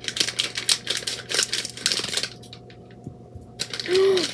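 Plastic blind-bag packet crinkling and tearing as it is opened by hand: a rapid run of crisp crackles for about two and a half seconds, a short pause, then more crackling near the end.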